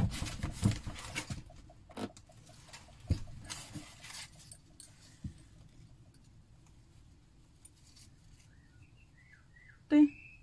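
Close rustling and knocking of hands handling and picking up balls of yarn, busy for the first few seconds and then dying down. A few faint bird chirps come near the end.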